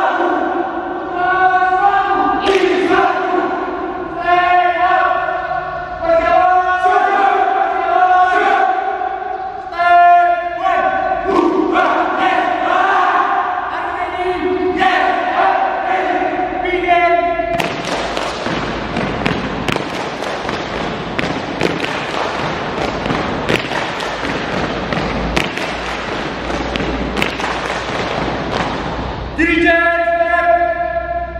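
A group of boys chanting and singing a scout yell in unison, in short phrases broken by brief gaps, opening with a shouted "Haaa huuu!". After about 17 seconds the voices give way to a long stretch of dense noise with many sharp taps, and the group's voices return near the end.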